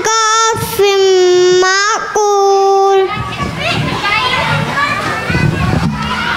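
A young boy chants Quran recitation into a microphone, holding long melodic notes, and stops about three seconds in. After that comes the mixed chatter of many children and adults.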